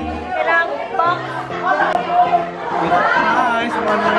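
Several people chattering at once over background music with steady held notes.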